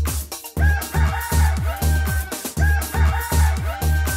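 A cartoon rooster's crow (cock-a-doodle-doo) sounding twice, about two seconds apart, over a children's song backing track with a steady beat.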